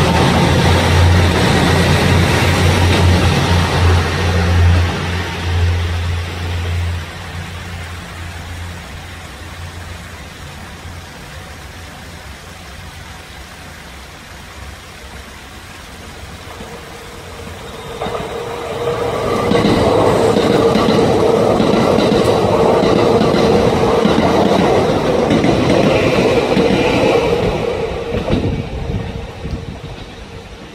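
A gray, orange-striped JR train finishes passing with a low steady drone that fades over the first several seconds. About eighteen seconds in, a Kintetsu Urban Liner limited express arrives and passes with a steady whine and clickety-clack over the rail joints, dying away near the end.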